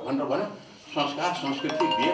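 A man speaking into a microphone. Near the end a steady chime of two held tones starts up under his voice.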